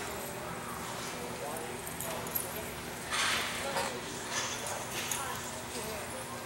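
Horses working on soft arena dirt, hoofbeats mixed with cattle movement and indistinct voices, with short noisy flares about three seconds in and again near five seconds in.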